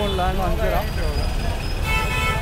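Busy night-street traffic: a steady low rumble of engines under nearby voices, with a vehicle horn starting to sound shortly before the end.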